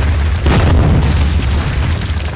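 Intro sound effect of a wall bursting apart: a boom with crumbling rubble, swelling about half a second in, over a deep steady bass.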